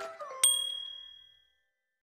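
The last notes of a background music tune, then a single bright bell-like ding about half a second in that rings out and fades away within about a second.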